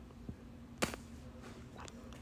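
A sharp click a little under a second in and two fainter clicks, from working a computer's mouse and keyboard, over a low steady hum.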